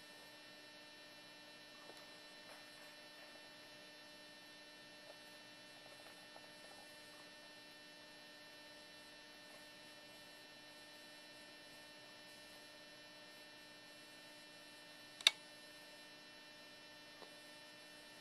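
Faint, steady electrical hum, with one sharp click about fifteen seconds in.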